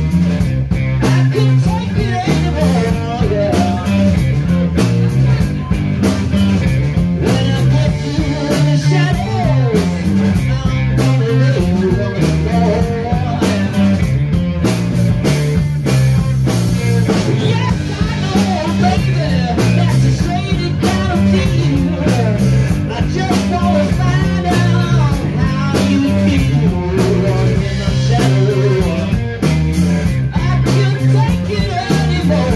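A blues-rock band playing live: a Telecaster electric guitar over bass guitar and a drum kit, with a repeating bass riff and steady drum hits.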